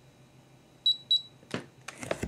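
Digital body-composition scale giving two short high beeps in quick succession, the signal that the weight reading has settled and been taken. Brief rustling handling noise follows near the end.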